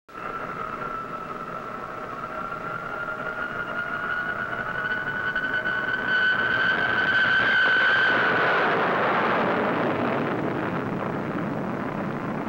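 Jet engine: a high whine that climbs slowly in pitch as it grows louder, then gives way to a broad roar about eight or nine seconds in, which slowly fades.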